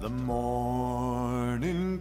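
A song: a voice holds one long sung note with a slight waver over a low sustained bass, stepping up to a higher note near the end.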